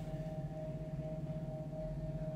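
Faint background music: a steady held note that rings like a bell or singing bowl, over a low steady hum.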